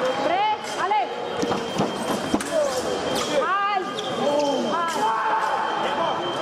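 Busy fencing-hall ambience: rubber-soled shoes squeak sharply on the pistes over voices echoing around a large hall, with a few sharp clicks. A thin, steady high electronic tone comes in about two-thirds of the way through.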